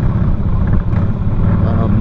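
Harley-Davidson Softail Springer's V-twin engine running with a steady, even low rumble.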